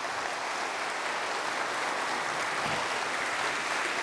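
Large congregation applauding steadily.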